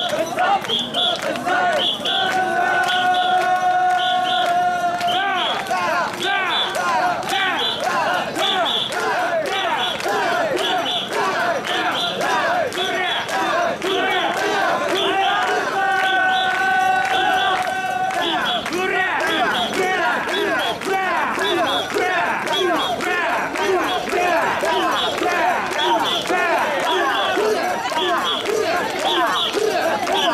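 Crowd of portable-shrine (mikoshi) carriers shouting a rhythmic chant together as they carry and bounce the shrine. A long steady tone sounds over the chanting about two seconds in and again about sixteen seconds in.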